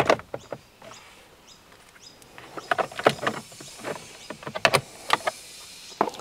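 Plastic lower steering-column shroud of a Toyota 79 series being unclipped and handled. A sharp plastic click at the start is followed by scattered light clicks and knocks in two clusters, about three seconds in and again near five seconds.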